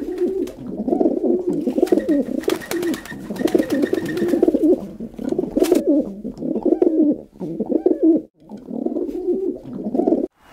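Pigeons cooing in low, repeated phrases almost without pause, with brief breaks about seven and eight seconds in.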